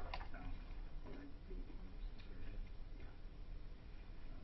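Quiet meeting-room tone: a low steady hum with a few faint, scattered clicks.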